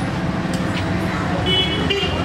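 Street traffic running steadily, with a short vehicle horn toot about one and a half seconds in.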